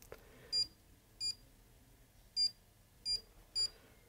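Panasonic Aquarea H Generation heat pump wall controller beeping as its buttons are pressed to step through the days of the week: five short, high beeps at uneven intervals.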